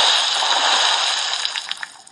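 Sound effect of a big splash of water, as of a body falling into a pot full of water, loud at first and fading out near the end.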